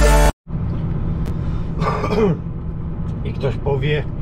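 Music cuts off abruptly a third of a second in. After a brief dropout, a lorry's engine runs with a steady low drone inside the cab as it drives, and short vocal sounds come around two seconds in and near the end.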